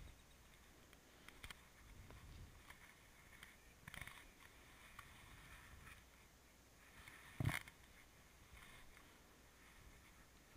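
Near silence, broken by faint scattered clicks and rustles and one brief, louder thump about seven and a half seconds in.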